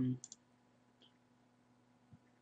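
A few faint computer mouse clicks: two close together just after the start and one more about a second in, over a low steady hum.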